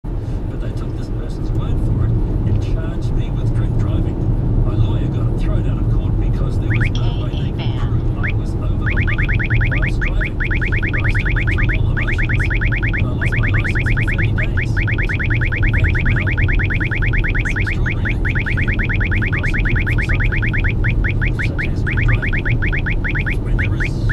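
Uniden DFR7NZ radar detector sounding a Ka-band alert, rapid high-pitched beeps that begin about seven seconds in and soon run together into a fast, continuous chatter, breaking into separate beeps near the end, over the car's steady road noise inside the cabin. The alert signals a police Stalker radar transmitting at 34.7 GHz.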